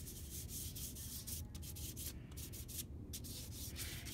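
Fingertips rubbing chalk pastel across paper to blend it: a faint run of uneven swishing strokes.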